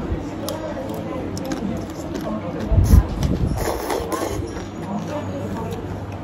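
A mouthful of khao soi egg noodles being slurped and chewed close to the microphone, with scattered small clicks. There is one loud low thump a little before halfway through.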